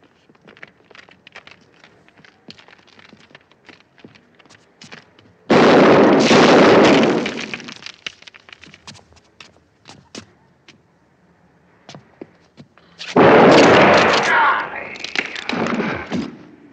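Two shotgun blasts in a film shootout, each a sudden very loud report that rings on for a second or two: one about five seconds in and one near the end. Between them come scattered light knocks and footfalls, and after the second blast a man cries out.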